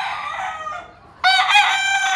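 Gamecock roosters crowing: one long crow trails off in the first second, and a second crow starts about a second later and is still going at the end.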